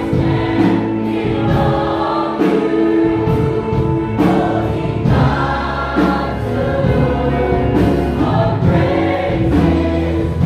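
A large mixed choir of adults and children singing a worship song together, with sustained notes held over a low accompaniment.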